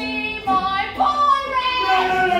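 A stage performer singing, holding notes that slide up and down in pitch, with a low steady note underneath for about the first second and a half.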